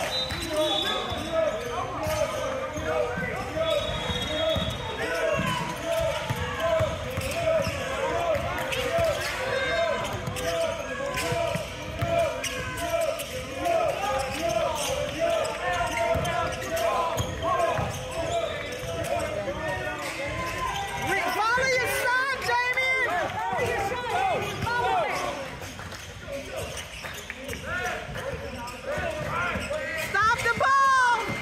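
A basketball being dribbled on a hardwood gym floor during a game, with sneakers squeaking and players calling out. There is a burst of squeaks about two-thirds of the way in.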